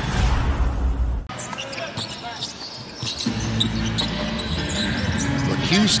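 A low boom with a rushing noise as a broadcast transition graphic plays, then arena sound of a basketball game with the ball bouncing on the court and arena music with a steady low bass coming in about three seconds in.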